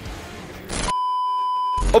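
A steady pure beep tone, just under a second long, with dead silence around it and a short burst of noise just before and after it: an edited-in signal-loss beep marking the camera cutting out.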